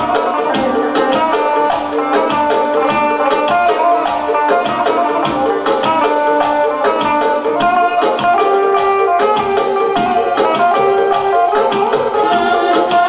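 Electric guitar playing quick melodic lines over a Korg Pa800 arranger keyboard's accompaniment with a steady percussion beat.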